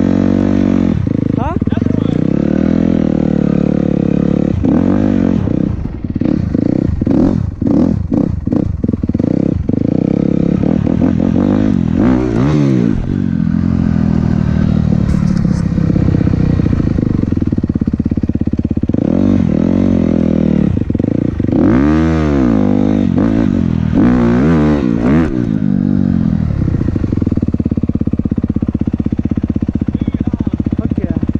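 Honda dirt bike engine heard close up from on board, revving up and falling back again and again as it is ridden. It is choppy, with short on-off bursts, about six to ten seconds in.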